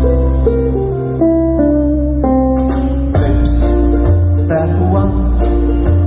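Live instrumental music: a ukulele played as the lead over sustained low bass notes, with the melody moving from note to note.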